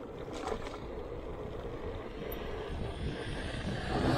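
Steady low rumble of wind on the microphone and tyre noise from a bicycle riding on tarmac. An oncoming van's engine and tyres grow louder near the end as it draws close.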